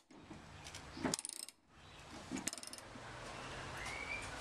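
Socket ratchet working a tight hinge bolt, giving two short bursts of light metallic clicking, about a second in and again a second and a half later.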